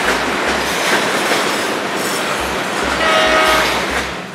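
Freight train of covered hopper cars rolling past: a steady rumble and rattle of steel wheels on the rails with intermittent low thumps. A brief steady tone sounds about three seconds in.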